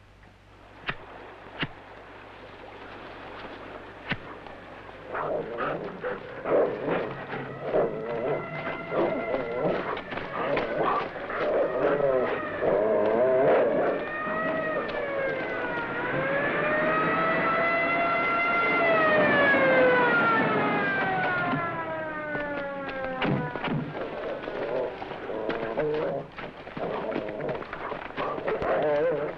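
A siren wailing, its pitch sliding slowly up and down and dying away a few seconds before the end, over a jumble of short, sharp knocks and clicks.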